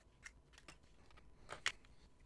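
Fountain pen caps being pulled off and laid on a wooden desk: a few light, scattered clicks and taps, the loudest about a second and a half in.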